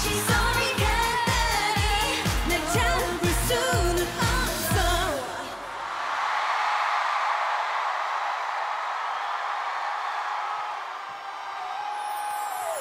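Live K-pop girl-group song, a dance beat about two pulses a second under women's singing, ending about five seconds in. A crowd then cheers and screams steadily for the rest.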